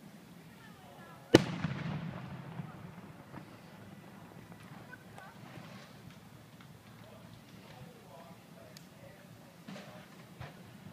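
A firework shell bursting with one sharp bang about a second and a half in, its boom echoing and dying away over the next couple of seconds. A few faint pops follow later.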